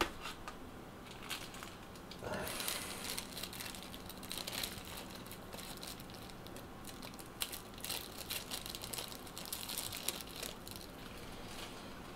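Light clicks, taps and rustling from hands handling the small metal and plastic parts of a rebuildable tank atomizer, with a louder rustle about two seconds in.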